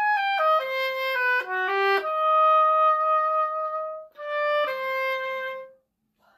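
Solo oboe playing an etude phrase: a run of quick notes, then a long held note. After a brief breath about four seconds in, a few more notes lead to a final held fermata note that stops just before the end.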